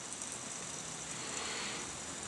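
Faint, steady whir of an aluminium fidget spinner spinning freely on its bearing, held on a fingertip; the bearing runs smoothly and makes little noise.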